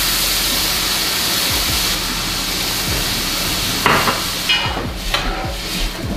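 Rice sizzling in hot oil in a pan over a high gas flame, a steady hiss that fades after about four seconds. A metal spoon stirs the rice and knocks against the pan about four seconds in.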